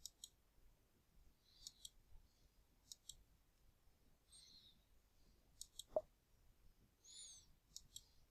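Faint computer mouse button clicks, several of them in quick pairs of press and release, over near-silent room tone, with a single louder knock about six seconds in.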